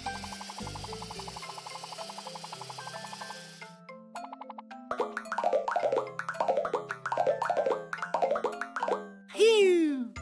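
Cartoon sound effects over children's background music. A fast rattling whir runs for the first few seconds, then a quick string of short pops, each falling in pitch, as yellow candy balls shoot out of a lollipop machine. Near the end comes a loud downward-sliding cartoon sound.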